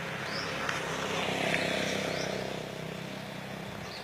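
Engine noise of a passing motor vehicle, swelling to a peak about halfway through and then fading.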